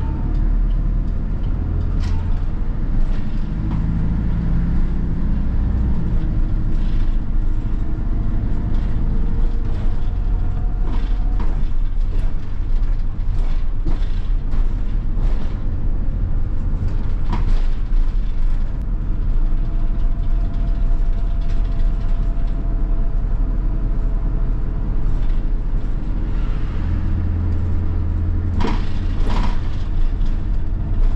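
Hino Poncho small bus running along a street, heard from the front of the cabin: steady diesel engine and road noise with scattered rattles and knocks from the body and fittings. The engine grows louder near the end.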